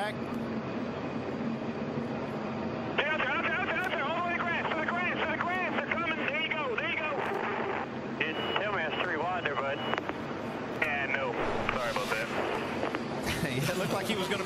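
Race car engines running, then from about three seconds in, team radio chatter over a two-way radio, the voices thin and tinny over the engine noise. A steady high beep sounds for a couple of seconds near the middle.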